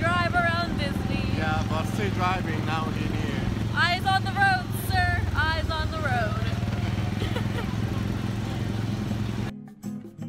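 Small gasoline engine of a Tomorrowland Speedway ride car running at a steady hum under the riders' voices. About nine and a half seconds in it cuts off suddenly to guitar music.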